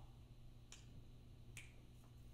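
Two finger snaps a little under a second apart, over near silence.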